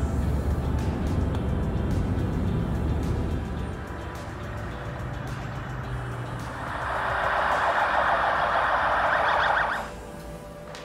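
Low rumbling road noise from a moving car, over background music. About two-thirds of the way in, a louder rushing hiss comes up and then cuts off suddenly just before the end.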